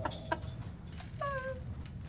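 A person crying: a brief, high, slightly falling whimper about a second in, with a few faint clicks around it.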